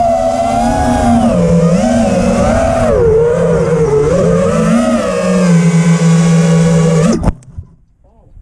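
FPV quadcopter's brushless motors (KO Demon Seed 2208 2550KV) and propellers whining. The pitch swoops up and down with the throttle, with a low rumble underneath. The sound cuts off abruptly about seven seconds in, with a brief knock, as the quad comes down in the grass.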